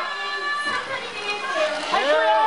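Concert crowd shouting and cheering, many high-pitched voices overlapping, dipping slightly in the middle and swelling again near the end.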